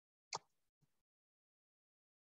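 A single short click about a third of a second in, followed by a much fainter tick about half a second later, against near silence.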